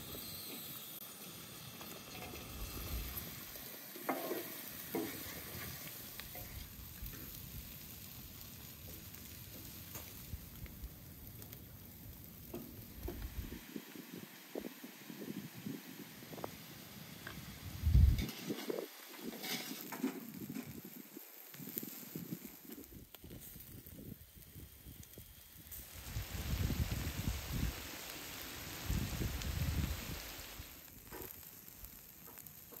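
Pieces of lamb liver, lung and heart with onion sizzling in a large shallow steel pan over a fire. A wooden spatula stirs and scrapes the pan, with scattered clicks and one sharp knock about halfway through. The sizzle grows louder near the end.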